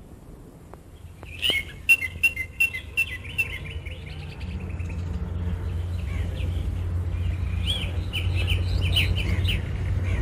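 Small birds chirping in quick runs of short calls, in two spells, one early and one near the end, over a steady low hum.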